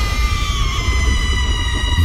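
Produced radio-show jingle: one sustained electronic tone slowly falling in pitch over a heavy, steady low bass.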